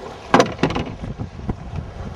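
Wind rushing over the microphone, with a few short knocks, the loudest about a third of a second in, as the handheld camera is swung around.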